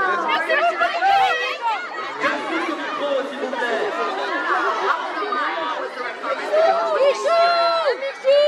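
Crowd chatter: many voices talking and calling out over one another, with louder, drawn-out high-pitched calls near the end.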